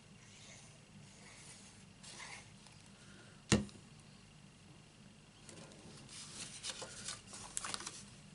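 Card stock being handled, rubbing and sliding over paper and the craft mat, with one sharp tap about three and a half seconds in. Paper rustling and scraping picks up over the last couple of seconds.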